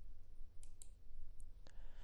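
A few faint, short clicks, about four, over a steady low hum.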